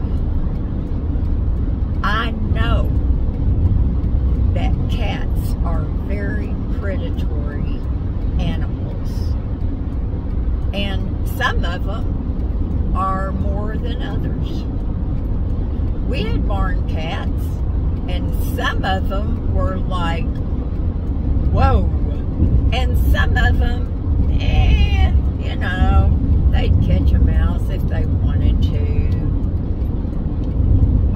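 Steady low road and engine rumble inside a car cabin at freeway speed, under a woman's voice talking on and off.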